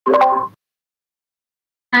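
A short electronic notification blip from the voice-chat app, lasting about half a second, then silence.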